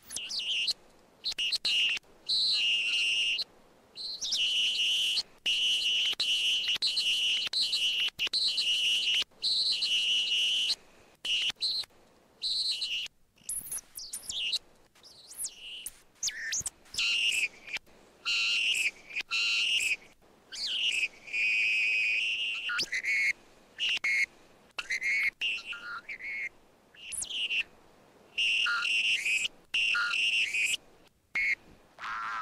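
Experimental tape-collage music of high chirping, whistle-like tones in bursts of a second or two, each cut off abruptly, with short silent gaps between.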